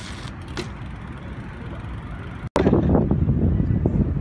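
Outdoor street ambience with steady traffic noise and a few faint clicks. About two and a half seconds in it cuts out abruptly, then gives way to a louder, rough rumbling noise.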